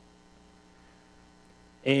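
Faint, steady electrical mains hum, a drone of several fixed tones with no change in pitch.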